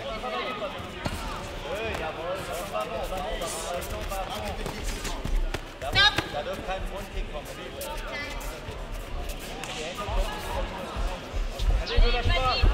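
Indistinct voices shouting in a sports hall over dull thuds of gloves and feet on the mat during a kickboxing exchange. About six seconds in there is a sharp hit with a brief high-pitched voice.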